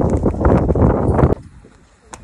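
A large cloth flag flapping and snapping hard in strong wind, with the wind buffeting the microphone; the rush cuts off abruptly about two-thirds of the way through.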